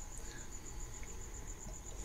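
A faint, steady high-pitched tone that pulses evenly several times a second, over low background hiss.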